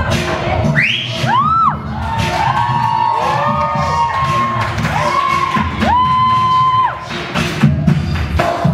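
Dance music with a steady beat, over which an audience cheers and whoops: a string of rising-and-falling and long held calls from about a second in, dying away near the end.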